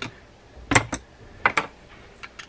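Three sharp clicks and knocks of a screwdriver against the metal side case of a vintage Daiwa 7850RL spinning reel as it is set into a case screw, the last two close together.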